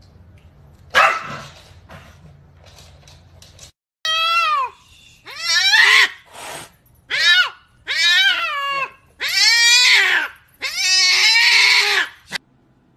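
A domestic cat meowing loudly again and again: about six long, drawn-out yowls, each falling in pitch. They follow one short, sharp animal cry about a second in.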